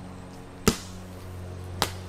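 Two sharp smacks of a large plastic play ball, about a second apart, over a steady low hum.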